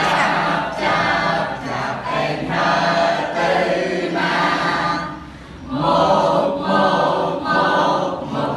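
A group of voices singing a Khmer children's song together, in short phrases, with a brief pause for breath about five seconds in.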